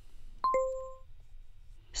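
Language-learning app's answer chime: two quick ringing notes, a higher one followed at once by a lower one, fading out within about half a second. It marks the chosen answer as accepted.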